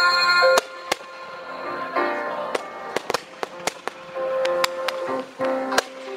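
Fireworks going off: about a dozen sharp bangs at uneven spacing, coming faster in the second half, over loud music with held chords.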